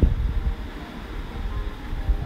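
Low rumble of wind and road noise from a moving vehicle, uneven and buffeting, with no clear pitch.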